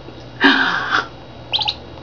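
A duckling peeping three times in quick succession, high and short, near the end. It is preceded about half a second in by a louder, brief breathy rush of noise.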